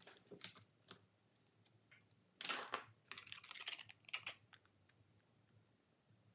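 Painting tools being handled on a hard work table. A few light clicks come first, then about two seconds of scraping, clattering noise that starts about two seconds in, is loudest at its start and thins out into ticks.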